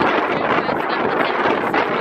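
Strong wind blowing across the camera's microphone, a loud, steady rushing noise.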